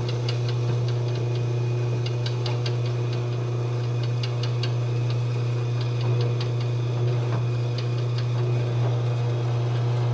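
Drill press motor running with a steady hum while its twist bit is fed down into aluminum tube, with light scattered clicks from the cutting.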